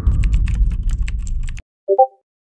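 Computer keyboard typing: a fast run of key clicks, about eight a second, over a low rumble, cutting off suddenly about one and a half seconds in. A short pitched blip follows at the very end.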